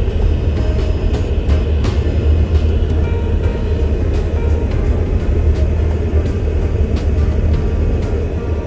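Steady low road-and-engine rumble inside a moving car, with background music playing over it.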